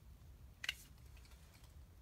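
A few faint clicks of small plastic parts as AAA batteries are fitted into a LEGO Mario figure's battery compartment, the sharpest click about two-thirds of a second in.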